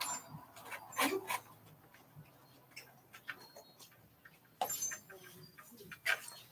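Slicker brushes raking through a Yorkshire terrier's coat: quiet scratchy strokes with scattered short ticks, and a louder brief cluster of sounds about a second in and again near the end.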